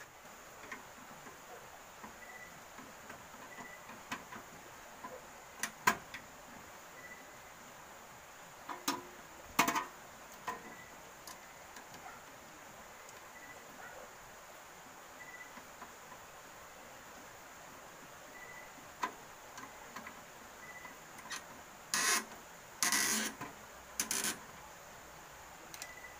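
Scattered clicks, knocks and scrapes of hand tools and stiff wire as wires are fastened under the terminal screws of a circuit breaker in an electrical sub panel, with a few longer scraping or rustling bursts near the end.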